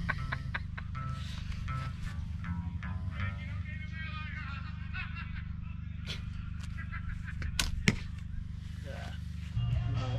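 Music and a distant voice coming over a PA, over a steady low hum, with a sharp crack about eight seconds in.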